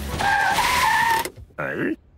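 Cartoon sound effect of car tyres screeching in a skid for about a second. It is followed by a short sound whose pitch dips and rises again, and then everything cuts off.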